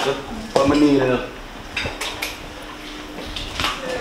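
Dishes and glassware clinking and knocking against each other and the counter as they are handled, with several sharp clinks about two seconds in and another near the end.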